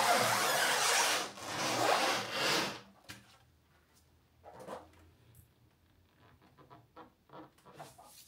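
Rubbing and scuffing of gloved hands sliding over a heavy alloy wheel and rubber tyre as it is handled, in a few long strokes over the first three seconds, then only faint knocks.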